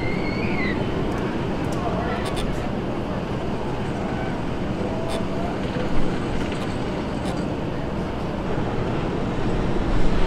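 A Premier Rides launched steel roller coaster train running along its track, heard as a steady rumbling roar of the wheels on the steel rails, with a few faint clicks.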